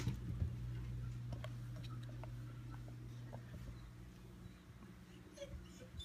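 A German shepherd puppy's claws clicking faintly and irregularly on a hardwood floor as she shifts and settles into a sit, over a steady low hum.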